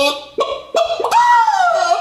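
A man's voice imitating a chicken: two short clucks, then a longer pitched call that rises and falls.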